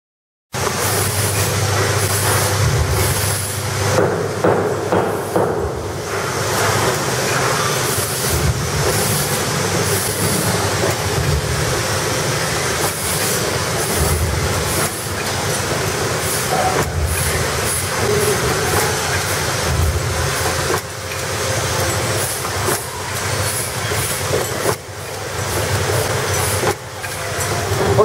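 Drip coffee bag packing machine running: a steady, dense mechanical clatter with rapid clicking, starting abruptly about half a second in.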